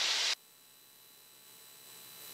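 A short burst of steady microphone hiss that cuts off suddenly about a third of a second in, followed by near silence.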